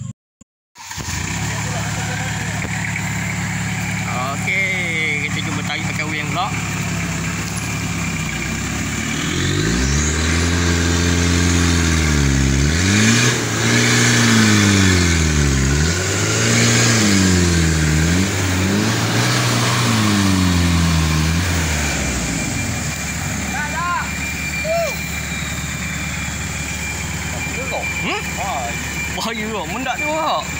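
Engine of a loaded Daihatsu Delta lorry stuck in mud, running steadily, then revved up and down about five times over roughly twelve seconds as it strains to climb out on a cable tow, before settling back to a steady run. A brief cut in the sound comes right at the start, and faint shouts are heard near the end.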